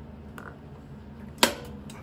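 One sharp snap about a second and a half in as the rotary main power switch of an Anatol Mini conveyor dryer is turned on for the first time, with a low steady hum behind it.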